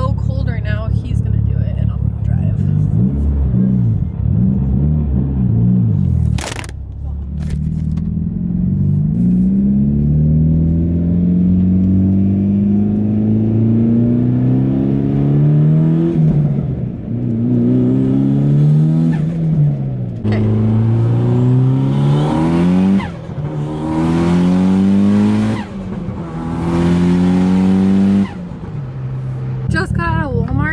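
Mitsubishi Lancer Evolution VIII's turbocharged 2.0-litre four-cylinder engine accelerating through the gears, heard from inside the cabin. Its pitch climbs steadily and drops back at each of several gear changes.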